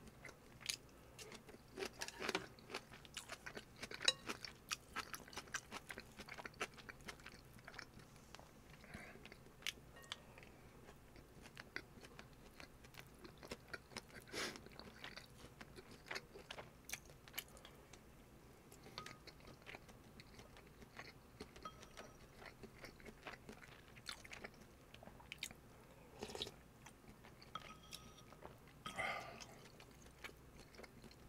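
Close-miked chewing of food: faint, irregular wet mouth clicks and soft crunches, with a few louder bites.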